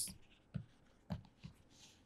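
Faint sounds of a pen writing by hand, with a few light ticks of the pen tip as a word is finished and underlined.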